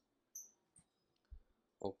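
A few faint, scattered clicks from a computer keyboard and mouse during editing, with the word "okay" spoken near the end.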